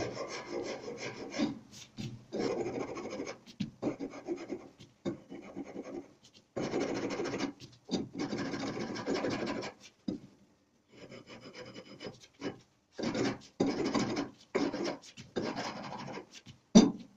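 A hand file scraping along a black walnut axe handle in repeated irregular strokes, shaping the wood, with a quieter pause about ten seconds in.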